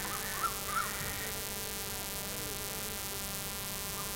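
Steady electrical hum with a dense buzz of evenly spaced overtones, with a few faint short voice-like sounds in the first second.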